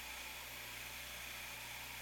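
A faint, steady low hum under a background hiss.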